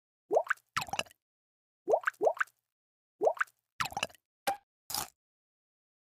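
Cartoon sound effects for an animated logo: about eight short bubbly plops in a row. Four sweep quickly upward in pitch and two sweep downward, followed by a short blip and a brief noisy burst about five seconds in.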